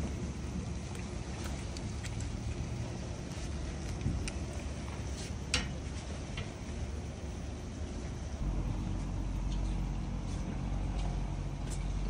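A steady low rumble with a few faint clicks; about eight seconds in, a deeper, steadier hum sets in and runs on.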